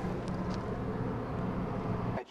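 Steady low engine rumble of heavy trucks running on the road, with a few faint ticks over it.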